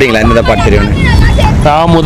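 Men talking in conversation over a steady low rumble of street traffic.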